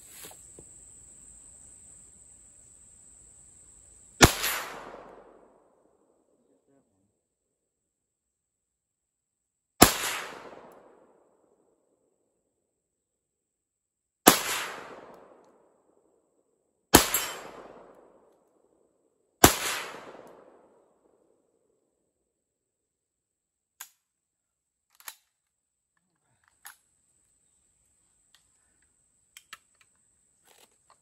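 Five single shots from an Auto Ordnance M1 Carbine in .30 Carbine, fired semi-automatically several seconds apart, the last three closer together. Each sharp report trails off over about a second. A few faint clicks follow near the end.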